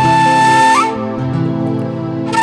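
Instrumental music: a flute-like wind instrument holds a long melody note, steps up briefly and drops out a little under a second in. A quieter accompaniment with a stepping bass line carries on.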